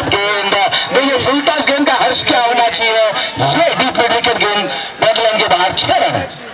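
A loud song with a singer's voice, held and bending notes throughout.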